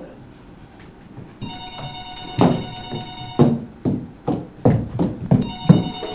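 A telephone ringing with a fast trill: one ring of about two seconds, then a second ring starting near the end, with a few short thumps in between.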